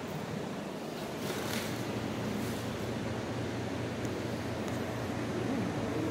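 A wall air-conditioning unit running: a steady rush of air with a low, even hum.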